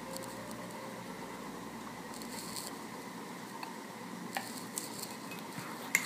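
Quiet room tone with faint handling noises from a small plastic oil bottle being poured over a glass bowl: a soft rustle about two seconds in and a couple of light clicks near the end.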